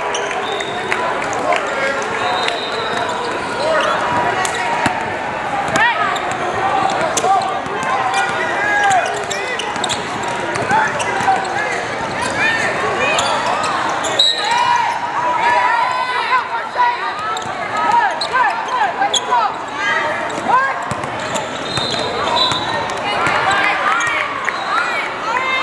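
Basketball game sounds on a hardwood court: the ball bouncing, sneakers squeaking in many short chirps, and players and spectators talking and calling out throughout.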